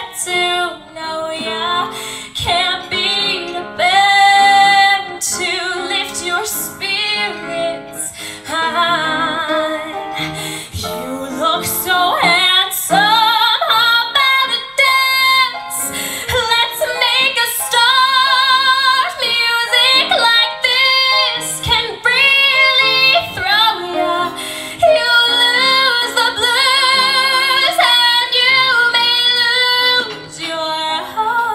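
A woman sings a show tune into a microphone with a wavering vibrato on her held notes, over instrumental accompaniment.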